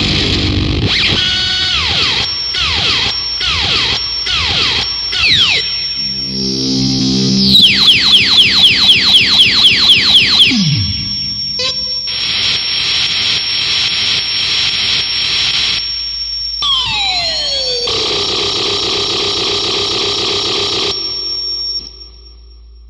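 Harsh noise music: loud, distorted electronic noise that bursts in abruptly, with repeated falling pitch sweeps and, midway, a fast pulsing run of falling sweeps about four a second. Later come rising and falling glides over steady noise, and it cuts off suddenly just before the end.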